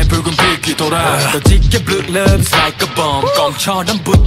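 K-pop boy group song: a male voice raps over a hip-hop beat with deep kick drum hits.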